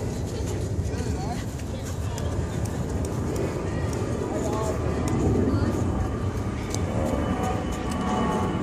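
Indistinct, distant voices of players and spectators at a baseball game, with no clear words, over a steady low rumble.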